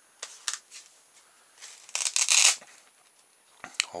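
Hands handling a small polystyrene model and its little LiPo battery: a few light clicks, then a loud rustling scrape lasting about a second around the middle, and a couple more clicks near the end.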